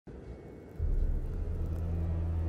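Low cinematic rumble of an intro soundtrack that swells suddenly about a second in and settles into a steady deep drone.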